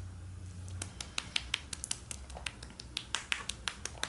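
Close-up drinking through a straw from a small juice carton: a quick, irregular run of sharp wet clicks from the mouth and straw, several a second.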